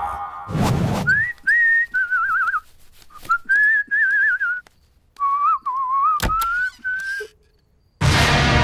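A man whistling a wandering tune in short phrases, the pitch wobbling up and down. It is preceded by a short rushing noise, and there is a sharp click about six seconds in.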